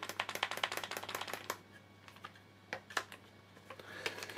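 A clamp being handled and set on a wooden joint: a quick run of small, sharp clicks for about a second and a half, then a few scattered clicks.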